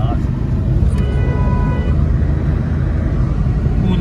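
Low, steady engine and road rumble inside a moving car's cabin, with a vehicle horn sounding once for just under a second, about a second in.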